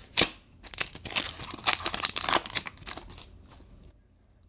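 Foil wrapper of a hockey card pack being torn open and crinkled by hand: a sharp click just after the start, then a couple of seconds of rapid crackling that thins out near the end.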